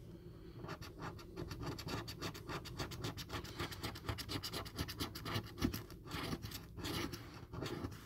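A coin scraping the latex coating off a paper scratchcard in quick back-and-forth strokes, starting about half a second in, with brief pauses between strokes.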